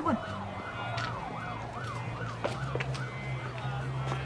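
Emergency vehicle siren in a fast yelp: a rising-and-falling wail of about three sweeps a second, over a steady low hum.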